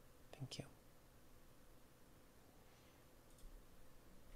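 Near silence on an open call line, with a faint steady hum and a brief faint whisper-like voice sound about half a second in.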